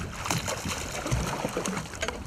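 Sea water splashing and lapping against the side of a boat, with scattered small knocks.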